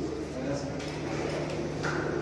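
Quiet male voices in an exchange of greetings, over a steady low hum.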